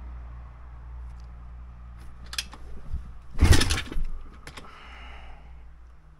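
A kick-start attempt on a pit bike's 170 cc engine that does not catch: a few light clicks and one loud, short bang about three and a half seconds in, the engine backfiring through the carburettor, which the rider puts down to ignition timing set too early.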